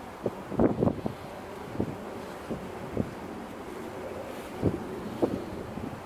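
Wind buffeting the microphone in several short, irregular gusts over a steady rush of wind and water.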